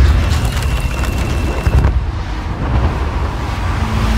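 Bus bomb explosion in film sound design: a deep, heavy rumble with crackling debris at the blast and a second burst just before halfway, then the rumble rolls on. A thin high ringing tone runs over the first couple of seconds.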